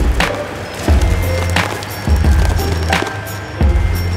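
Background music with a slow, steady beat, over the cracking and crunching of cardboard being knocked down and crushed under a road roller's drum.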